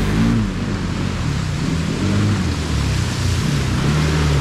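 Can-Am Outlander 650 ATV's V-twin engine running under throttle, its pitch rising and falling, as the quad ploughs through a muddy water hole with water splashing and spraying around it.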